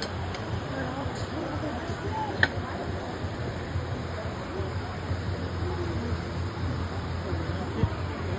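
Low background chatter of several people over a steady rush of water from a small rock waterfall, with one sharp click about two and a half seconds in.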